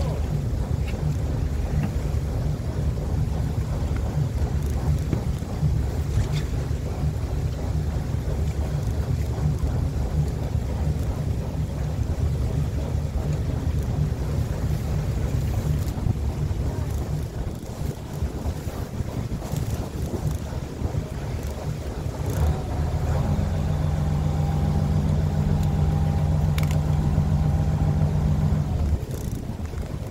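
A fishing boat's engine running steadily under wind buffeting the microphone. About 22 seconds in the engine note firms up into a louder, steadier hum for several seconds, then drops back just before the end.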